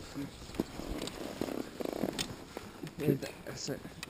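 Paramotor harness gear being handled and adjusted: a few light knocks, then two short rasping rattles about a second and a half in.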